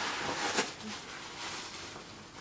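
Paper gift bag and its contents rustling as hands rummage inside, with one sharper crinkle about half a second in.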